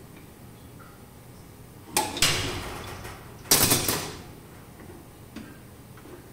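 A wrench clanking and scraping against steel pipe fittings, twice: once about two seconds in and louder about a second and a half later, each sound fading quickly.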